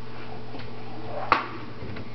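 A single light knock from the open wooden kitchen drawer being handled, about a second in, over a steady low hum.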